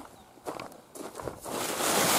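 Footsteps and rustling on dry ground: faint scuffs at first, swelling into a louder rustle in the last half second.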